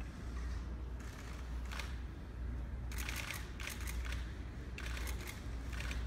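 Press photographers' camera shutters clicking in quick bursts of several clicks at a time, over a low steady hum.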